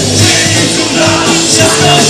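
Live rock band playing loudly: electric guitar and drum kit, with a singer's voice over them.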